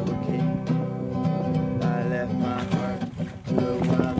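Background music: a song with acoustic guitar and a singing voice.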